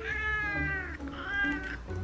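A British Shorthair cat meowing twice, a long meow and then a shorter one, in protest while it is held for a claw trim.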